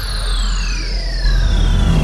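Production-logo sound effect: a deep, steady rumble under two high whistling tones that glide slowly downward.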